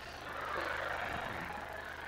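Live audience crowd noise, an even swell of sound that rises and then fades, over a low steady hum.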